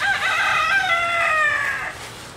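A rooster crowing once: a single long call of nearly two seconds that falls away in pitch at the end.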